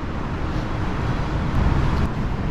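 Steady road-traffic noise, a low rumble that swells a little near the end.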